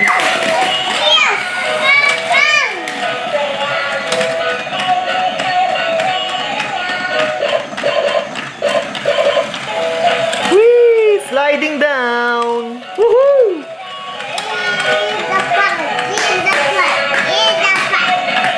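Battery-operated Dalmatian puppies stair-climbing play set running, playing its electronic tune, with small clicks from the moving plastic stairs. About ten seconds in, a child's high, gliding voice takes over for a few seconds.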